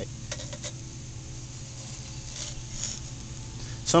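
A metal skimming tool scraping and clicking faintly in an electric lead pot as dross is skimmed off the molten lead, a few light clicks over a steady low hum.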